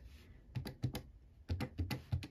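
Plastic keys of an electronic desk calculator being tapped in two quick runs of presses, with a short pause near the middle.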